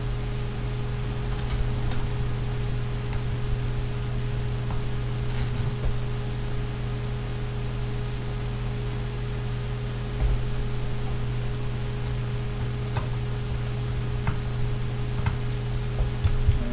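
Steady electrical hum and hiss, with a few faint small clicks and taps scattered through it from fiddly handling of tiny screws and a small screwdriver on a scale-model door part.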